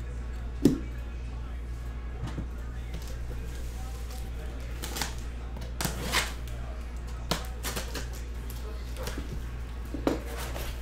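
A sealed cardboard shipping case being handled and cut open with a box cutter: scattered short, sharp taps and scrapes against the cardboard, the loudest about a second in, over a steady low hum.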